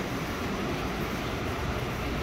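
Steady low rumbling background noise.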